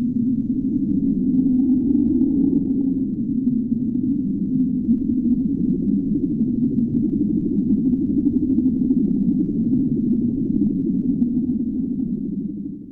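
A low, steady rumbling drone that fades out near the end.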